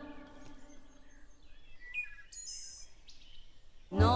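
Background music with singing fades out in the first second, leaving faint garden ambience with a few short bird chirps.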